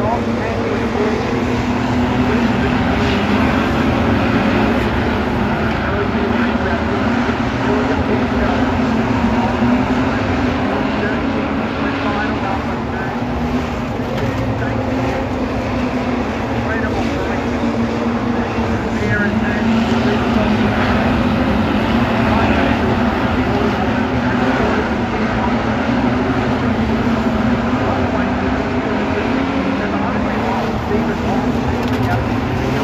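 A pack of street stock race cars running hard on a dirt speedway oval. The mass of engines goes on loudly and without a break, swelling and easing as the cars go through the turns.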